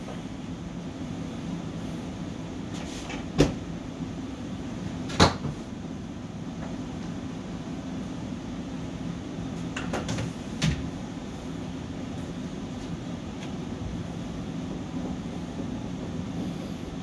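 Steady low room hum of equipment and ventilation, with two sharp clicks about three and a half and five seconds in and two fainter clicks around ten seconds in.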